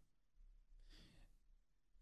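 Near silence, with one faint, short breath about a second in.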